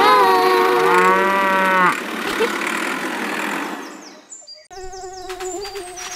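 One long cow moo lasting about a second, laid over the closing music of a children's song. The music then fades out, and a new light instrumental intro begins near the end.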